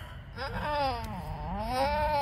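A doe goat in labor with her first kid lets out one long cry that rises and then falls in pitch, starting about half a second in, as she strains through a contraction with the kid's head and front feet already out.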